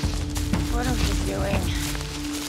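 Horror film soundtrack: a steady musical drone breaks off and a loud, deep rumble takes over, with short voice-like cries rising and falling over it.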